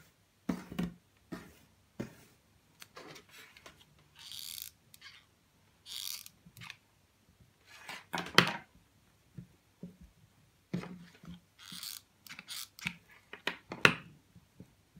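Hands handling a coiled rope ring and jute twine tassels on a table: intermittent rustles and light taps, with a louder knock about eight seconds in as the hot glue gun is picked up.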